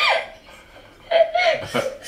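A man laughing: a burst at the start, a brief lull, then a run of short chuckles from about a second in.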